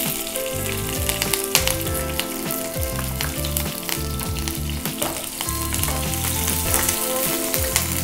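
Green chillies and garlic frying in hot oil in a pan, a steady sizzle with many small spattering crackles.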